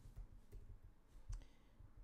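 A few faint clicks from a computer keyboard and mouse, the clearest about one and a third seconds in, over quiet room tone.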